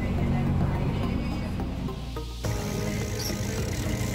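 Steady low drone of a cruise boat's engine, heard inside the cabin. About halfway through, the sound cuts to the open deck, where a brighter rushing hiss of wake water and wind joins the drone.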